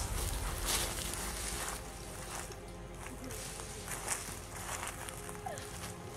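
Footsteps and rustling in dry leaf litter, a few scattered steps, quiet, as a music track fades out at the start.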